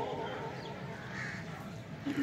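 Faint cawing of crows outdoors during a pause, a few short calls, one about a second in, while the echoing tail of an amplified male voice dies away at the start.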